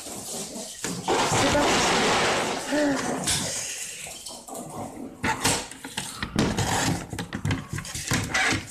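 A sheet of scrapbooking paper rustling and sliding as it is handled and laid flat, followed by a run of light knocks and clicks as it is lined up on a paper trimmer.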